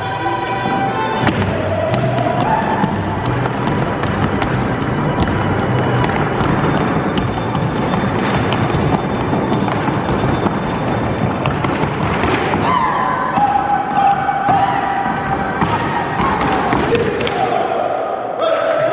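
Music for a Mexican folk dance with rapid heel-and-toe stamping of zapateado footwork on a hollow wooden stage, dense and continuous, with long held notes in the music over the last few seconds.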